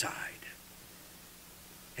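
A man's voice ending a word softly and breathily in the first half-second, then about a second and a half of quiet room tone with a faint steady hum.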